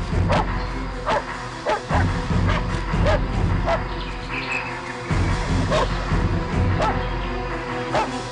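A German Shepherd on a leash barking repeatedly, about eight short barks spaced roughly a second apart, over background music.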